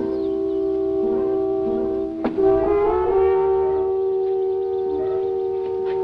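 Orchestral background score of held horn chords. The chord slides to a new one a little before the middle, with a sharp click at the change.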